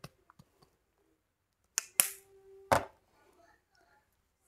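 Small plastic skincare bottle being handled and its liquid patted between the hands and onto the face: three sharp clicks and slaps within about a second, about two seconds in.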